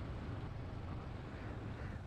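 Royal Enfield Bullet single-cylinder motorcycle under way: a steady, fairly faint low drone of engine and wind noise on the rider's microphone.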